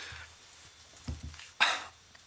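A short, loud cough close to a desk microphone, about one and a half seconds in, with a softer low thud just before it.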